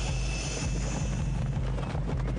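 Aircraft engines droning steadily.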